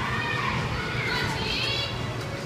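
Children's voices in the background: high-pitched chatter and calls in two short stretches, over a low steady room rumble.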